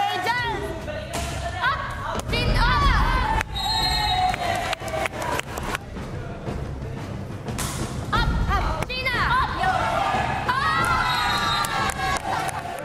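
Excited shouting and cheering from volleyball players and teammates, with a few thuds of the ball and background music.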